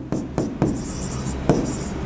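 Chalk writing on a chalkboard: a run of short scratchy strokes and light taps as a word is written.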